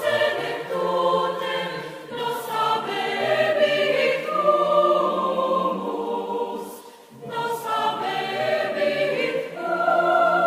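Background music of a choir singing, with a short break between phrases about seven seconds in.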